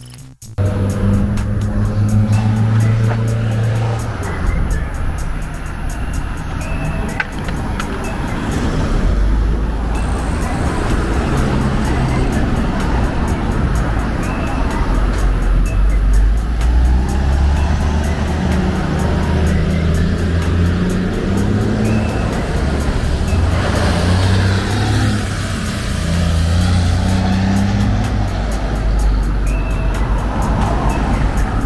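Street traffic, with cars passing on the road, under music with a deep bass line that plays throughout.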